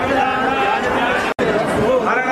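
Several men's voices overlapping at once, with a brief full dropout about a second and a half in.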